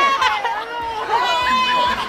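Several people shouting and cheering over one another, with one voice holding a long call near the middle.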